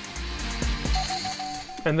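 Morse code from the Russian numbers station M12, received on shortwave through a software-defined radio: a single beep tone keyed on and off, starting about halfway through, over a steady hiss of radio static.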